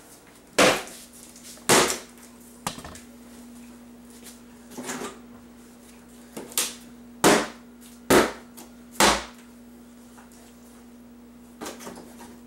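Hammer blows and clattering plywood as a wooden shipping crate is knocked apart: about eight sharp, loud knocks, the last three about a second apart, with a softer clatter near the end. A steady low hum runs underneath.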